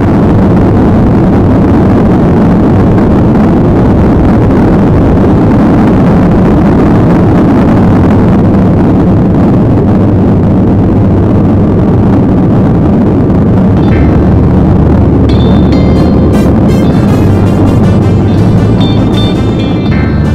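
Airliner's jet engines at takeoff thrust, heard from inside the passenger cabin: loud, steady engine noise through the takeoff roll and liftoff. Music comes in over it about two-thirds of the way through.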